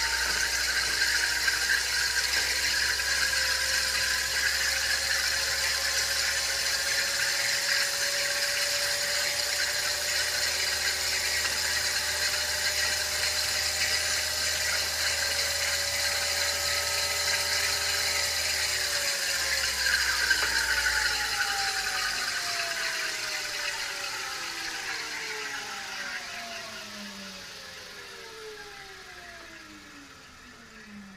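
TM4 electric drive unit spinning on a test bench, its motor and gearbox giving a steady whine that creeps slowly up in pitch. About 19 seconds in the torque is cut, and the whine falls steadily in pitch and fades as the unit coasts down under a zero torque command.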